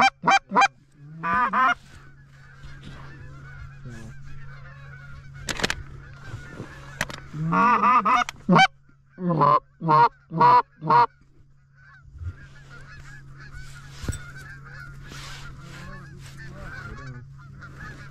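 Goose calls blown loud and close in short series of honks and clucks, a few seconds apart, with the last bursts about eleven seconds in. Under and between them runs the faint, continuous honking of a distant flock of Canada geese.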